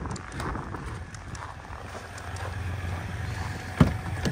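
A truck's rear passenger door latch clicking loudly as the door is pulled open near the end, over a steady low background rumble.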